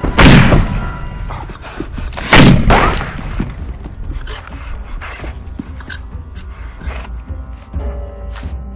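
Gunfire in a film soundtrack: two loud shots about two seconds apart, each followed by a booming echo, then smaller bangs and thuds, over a film score.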